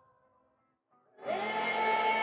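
Near silence, then a little over a second in a group of voices starts singing together in chorus, loud and sustained.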